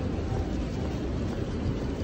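Steady low rumbling outdoor noise with no distinct events.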